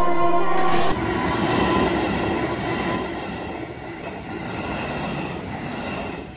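An electric commuter train passing close by at a street level crossing: a loud rush of wheels on rails that sets in suddenly about a second in and slowly eases off.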